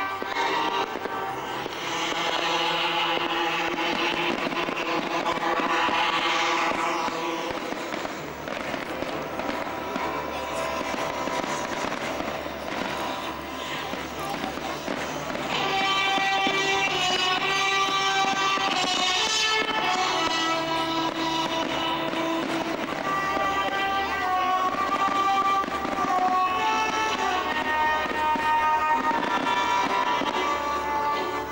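Music playing continuously with fireworks shells going off in the sky, the music the louder sound throughout.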